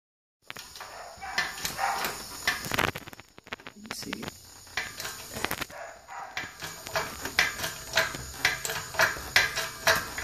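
Irregular metallic clicks and knocks from a shop press as a new tapered roller carrier bearing is pressed onto a 12-bolt limited-slip differential carrier, coming about two to three a second near the end.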